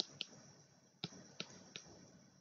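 About five faint, sharp clicks, unevenly spaced, made by handwriting strokes being put onto a computer screen.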